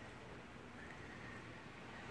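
Faint, steady outdoor background noise with no distinct sound standing out.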